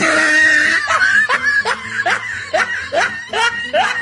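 A person laughing in a long run of short 'ha' sounds, each rising in pitch, about three a second.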